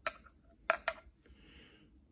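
Metal spoon clinking against a small glass espresso cup: a light clink at the start and two more close together just before the one-second mark, followed by a faint soft rustle.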